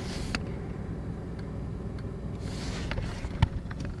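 Steady low rumble of engine and road noise inside a car's cabin while driving in traffic, with a few light clicks.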